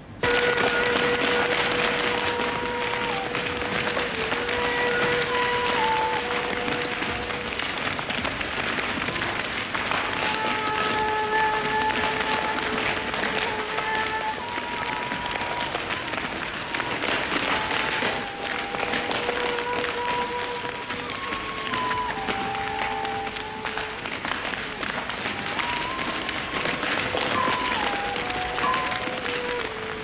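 Film soundtrack: a dense, steady hiss with several long held tones at once, each stepping to a new pitch every few seconds.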